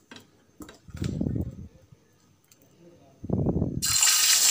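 A low voice sounds briefly twice over a quiet kitchen. Near the end, hot oil suddenly starts sizzling loudly as urad dal vada batter goes into it for deep frying.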